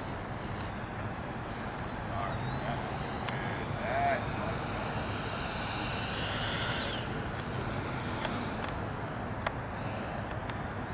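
The electric ducted fans of a Freewing F-22 RC jet whining as it flies a low pass on approach. The high whine swells to its loudest about six seconds in, then drops in pitch as the jet passes.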